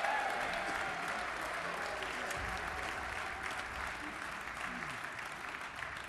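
Audience applauding, the clapping strongest at first and slowly dying away.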